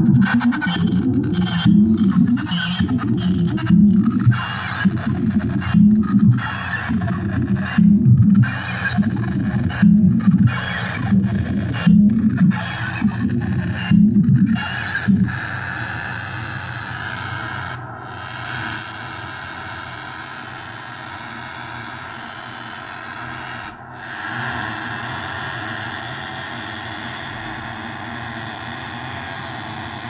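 Korg Volca synthesizers playing a sequenced electronic loop. A low line pulses about once a second, with short stuttering gaps, for the first half. Then it drops out, leaving a quieter, steady sustained synth tone.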